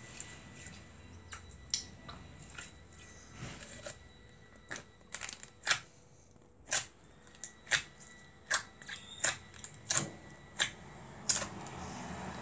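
Blue slime being squeezed and worked in the hands, giving irregular sharp clicks and pops, sparse at first and coming about twice a second in the second half.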